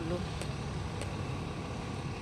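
Steady low rumble of outdoor waterfront background noise, with a couple of faint clicks.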